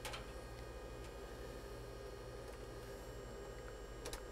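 Faint steady electrical hum from network equipment in a rack, with a soft click just after the start and another near the end as a patch cable is handled.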